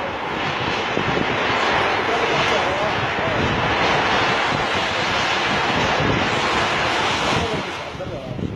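Heavy demolition machinery tearing down a building: a loud, continuous din of engine and breaking material that dies away near the end.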